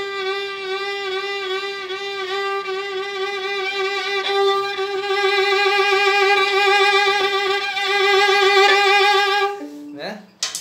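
Violin holding one long note with an exaggerated, wide vibrato played as a technical exercise. The waver starts slow and gets faster and louder, and the note stops just before the end.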